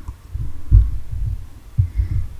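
Irregular low thumps and rumble on the microphone, the loudest about three-quarters of a second in.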